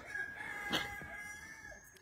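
A rooster crowing faintly: one long, drawn-out call that fades away toward the end. A small click comes about three-quarters of a second in.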